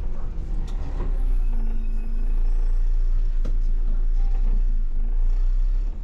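MAN Lion's City city bus driving slowly, heard from the driver's cab: a steady low engine and drivetrain rumble, a little louder from about a second in, with a few sharp clicks and rattles from the cabin.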